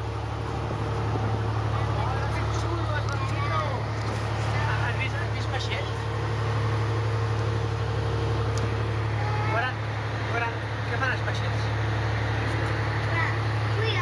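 Tour boat's engine running with a steady low drone, with passengers' voices chatting over it.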